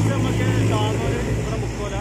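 A large truck driving past close by, its engine a steady low drone that is loudest in the first second and eases off as it goes by.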